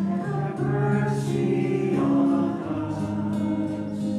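Choir singing a hymn in long held notes.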